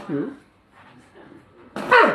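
A man's sharp, loud yelp of pain near the end, under firm hand pressure on his thigh during bone-setting, with a short counted word just before it.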